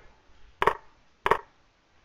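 Two sharp computer-mouse clicks, about two-thirds of a second apart, stepping a chess program forward through two moves.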